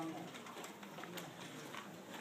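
Quiet classroom room tone during a pause in speech, with a few faint small clicks and rustles.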